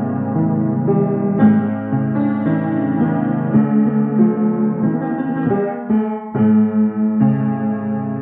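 Piano played live, a slow tune of held chords that change about once a second, with a brief dip just before six seconds in.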